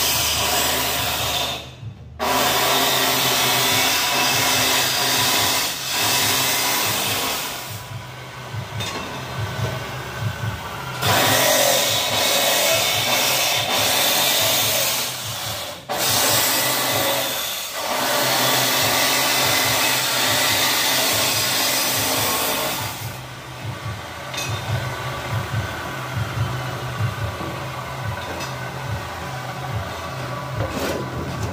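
Angle grinder with a cut-off disc cutting steel, the steady cutting noise breaking off briefly a few times. About three quarters of the way through the grinding stops, giving way to quieter, uneven knocks.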